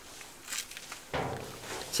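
A short pause in a man's speech: quiet background with a brief soft rustle, then a soft breathy sound in the second half, taken to be him drawing breath before he talks again.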